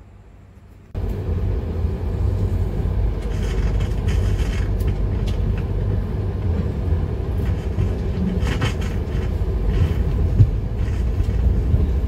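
Steady low rumble of a passenger train carriage running on the rails, heard from inside the carriage. It starts about a second in, after a brief quiet moment.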